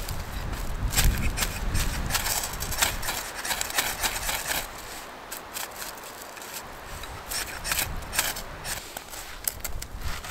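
Ferrocerium rod being struck with a scraper: a series of sharp, quick scraping strokes throwing sparks onto birch-bark tinder to light a fire.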